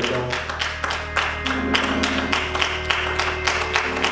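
Congregation clapping hands in a steady rhythm, a few claps a second, over held instrumental chords with a low bass note.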